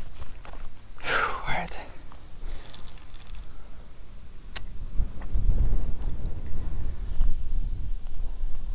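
Spinning reel and line being handled, with one sharp click about halfway through and a low rumble in the second half.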